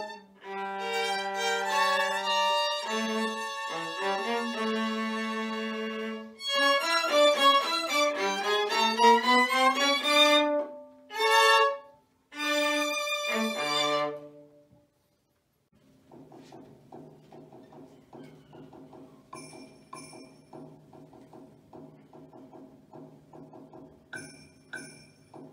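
Bowed string trio playing a lively passage, with quick runs over a low part, closing on held notes about fourteen seconds in. After a short pause, quieter music with a held low note and quick light ticks begins.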